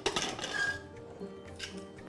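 Soft background music, with a metallic clink at the very start as the pressure cooker's whistle weight is lifted off, letting out steam.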